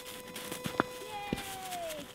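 A small dog digging in snow gives one drawn-out whine that slides slowly downward in pitch over about a second, after a couple of sharp clicks.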